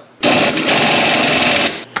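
Pneumatic impact wrench hammering as it runs down and tightens the nut on a rear shock absorber's mounting bolt: one loud run of about a second and a half, starting a moment in and stopping shortly before the end.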